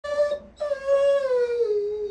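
Doberman vocalizing: a short high call, then a longer drawn-out howl that slowly drops in pitch. It is the dog asking to be let outside.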